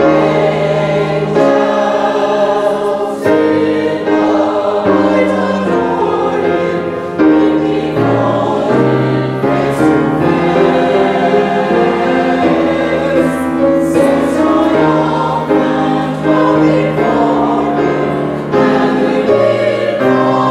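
Church choir singing a sacred anthem, several voice parts holding sustained notes that move in steps.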